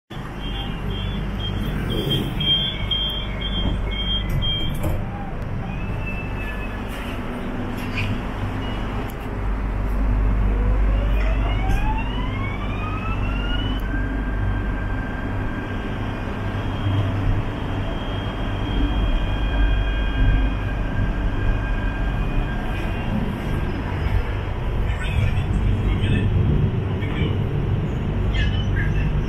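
KTM Class 92 electric multiple unit running, with a steady low rumble throughout. About ten seconds in, a whine from the traction equipment rises smoothly in pitch as the train accelerates, then levels off into a steady whine. A quick string of evenly spaced beeps sounds in the first few seconds.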